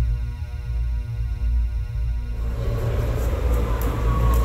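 Low droning intro music of steady held tones over a deep rumble, cutting about two and a half seconds in to the noise and rumble of a train at a station platform.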